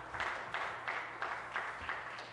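Applause from legislators at the end of a member's statement, a steady patter of clapping that slowly dies away.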